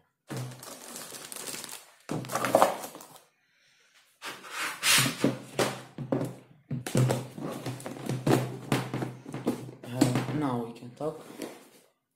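Plastic bag of coconut-fibre substrate crinkling and rustling as it is handled, in several bursts with short pauses, with thunks of a plastic storage tub being set down and moved.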